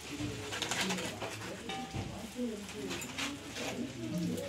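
Low cooing of a bird, with indistinct voices behind it and oil crackling in the frying pans in two short spells.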